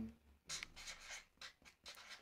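Felt-tip marker writing on paper: a quick series of short, scratchy strokes as letters are drawn.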